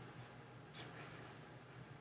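Near silence: room tone with a faint low hum, and one faint click a little before the middle.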